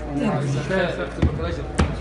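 Two sharp knocks about half a second apart in the second half, over a voice talking, as small objects are handled by hand.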